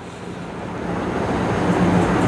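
A rushing noise without clear pitch that grows steadily louder through the pause.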